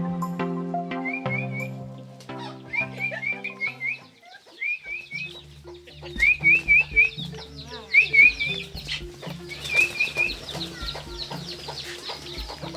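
Soft instrumental music that stops about four seconds in, while a small bird chirps in short repeated runs of two to four notes. Chickens cluck and pigeons flap their wings, loudest in the middle of the stretch.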